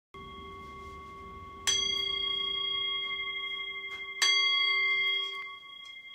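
A bell-like metal instrument struck three times: softly at the very start, then louder about one and a half and four seconds in. Each strike rings on with a few clear, steady overtones that slowly fade.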